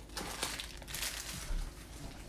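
Foil trading-card pack wrapper crinkling and rustling in short, irregular bursts as hands open the pack and pull out the cards.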